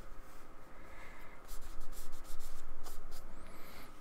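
Small paintbrush scratching and dabbing acrylic paint onto card in quick, short strokes, louder from about a second and a half in.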